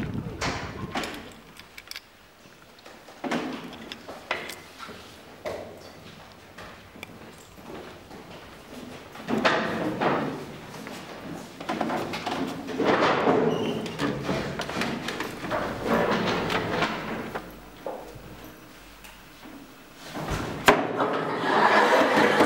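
Children walking into a classroom: footsteps and scattered knocks and thuds of desks and chairs, with a sharp knock shortly before the end followed by girls' laughter.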